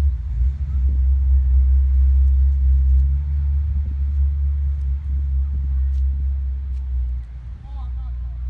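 A loud, steady low rumble, fluttering slightly in level throughout.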